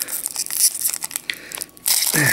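Foil booster pack wrapper being torn open and crinkled by hand: a run of irregular crackling rips with short gaps between them.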